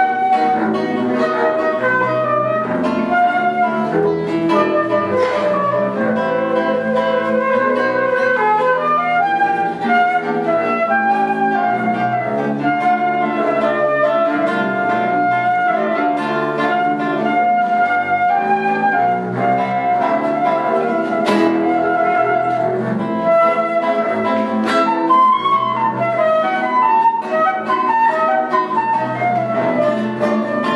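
Live acoustic trio playing: a flute carries the melody over a classical nylon-string guitar and a bowed double bass.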